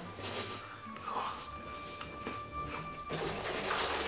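Quiet background music with a few long held tones that stop about three seconds in, under the crunching and chewing of a gingerbread cookie, which comes in noisy bursts at the start, about a second in and near the end.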